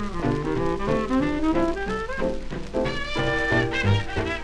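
Small swing band playing an instrumental passage on a 1943 78 rpm record: a lead horn plays a moving melody over piano, electric guitar, string bass and drums.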